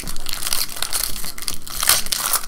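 Foil trading-card pack wrapper crinkling and crackling in the hands as it is worked open, a dense run of small crackles.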